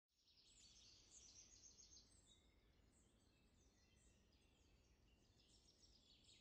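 Near silence, with faint birds chirping in the background, mostly in the first two seconds.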